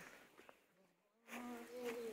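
Near silence for the first half, then a low-pitched buzz or hum with a steady pitch that comes in just past halfway and keeps going.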